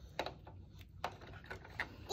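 A few faint clicks and taps of hard plastic toy castle parts and a figurine being handled. The clearest click comes just after the start, with smaller ones near the middle and near the end.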